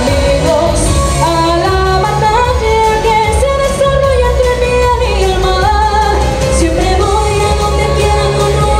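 A woman sings an upbeat pop song live into a microphone over backing music with a steady bass and drum beat.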